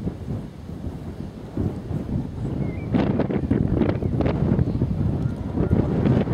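Wind buffeting the camera microphone, a low rumble that grows louder about three seconds in.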